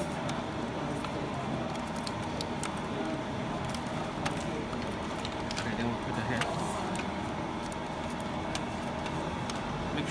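Scattered light clicks and rustles of fingers handling a flat ribbon cable and the plastic print head carriage, over a steady background hum.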